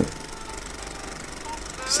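Film projector running with a steady mechanical rattle.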